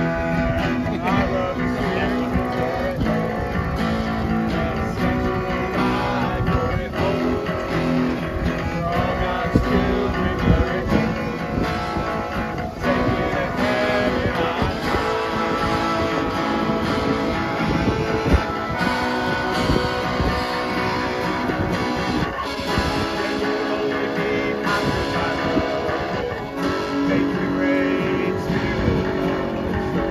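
A small band playing rock live: strummed acoustic guitar, electric guitar and accordion, with singing.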